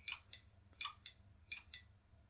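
A few short sharp clicks, some in close pairs, from an input switch on a PLC trainer being pressed repeatedly. Each press pulses the decrement input and counts the counter's value down.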